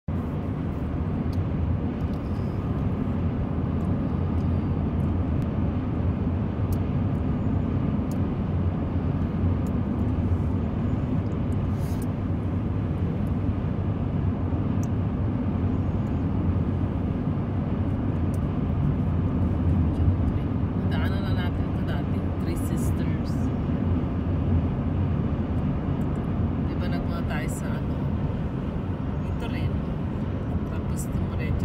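Steady low rumble of a car's road and engine noise heard from inside the cabin at highway speed, with faint voices briefly in the second half.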